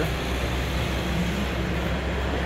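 Steady background din of a large, busy indoor hall, with a constant low hum under it.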